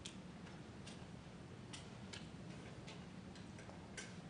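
Scattered faint clicks from the congregation as the communion cups are passed, irregular and about two a second, over a steady low room hum.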